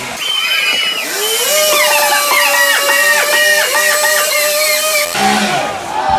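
Gas chainsaw revving to full throttle about a second in, then running high with repeated dips in pitch as it bites into a log round to carve the eyebrow of a face. The sound changes near the end.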